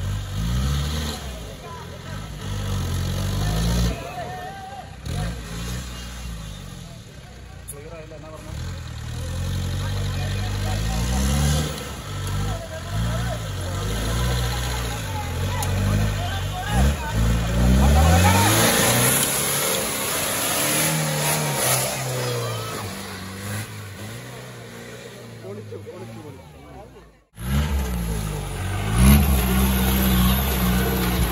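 A 4x4 jeep's engine revving hard again and again, its pitch climbing and dropping as it works up a muddy slope, with voices of onlookers over it. The sound cuts off abruptly about 27 seconds in, and another jeep engine is heard revving after it.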